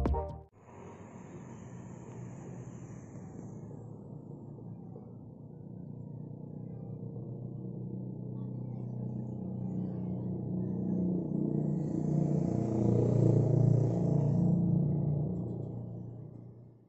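A low outdoor rumble like a distant motor vehicle, steady at first and swelling louder over the second half before fading at the end.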